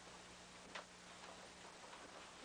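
Near silence: a low background hiss with a steady low hum, and a single faint click about three-quarters of a second in.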